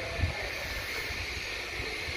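Low, fluctuating rumble of wind on the microphone over faint outdoor background noise.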